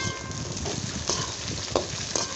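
Sliced ivy gourd and onions sizzling in hot oil in a metal pan. There is a sharp click at the start and a few light knocks of a spatula against the pan.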